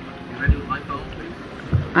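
Wind buffeting the microphone aboard a sailboat under way, a steady rush with two low thumps, about half a second in and again near the end. Faint voices underneath.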